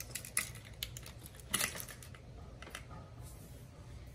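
Irregular light clicks and taps of hard plastic being handled: fishing lures set into the compartments of a clear plastic tackle box. The loudest click comes about a second and a half in.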